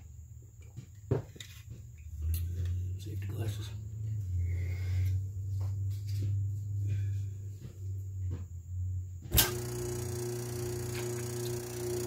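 Kenmore dryer motor (P/N 3395654) running on a bench test cord: a low steady hum comes in about two seconds in, with a loud click near the end after which the hum holds steady. It runs, the sign that the motor is good.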